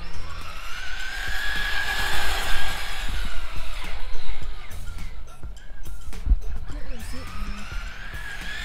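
Traxxas Slash 4x4 RC short-course truck running on a 2S battery: the whine of its electric motor and drivetrain rises as it accelerates, holds, then falls away, and rises again near the end.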